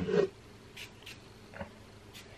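A few faint, short hisses about a second in and again near the end: spritzes from a pump spray bottle of hair mist. A brief vocal sound comes right at the start.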